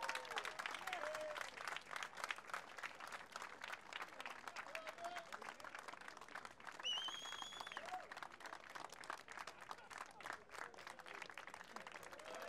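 Crowd applauding, with scattered voices and one high cheer about seven seconds in.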